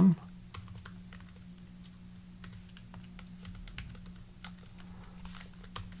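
Computer keyboard typing: a run of irregular key clicks over a low steady hum.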